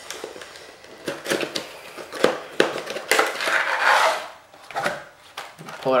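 A cardboard retail box and the clear plastic blister tray inside it being handled and pulled apart: a string of light clicks and knocks, with a longer scraping rustle about three to four seconds in as the tray slides out of the box.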